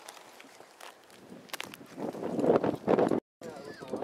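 Indistinct voices, loudest in the second half, with a few sharp clicks before them; the sound drops out for a moment near the end.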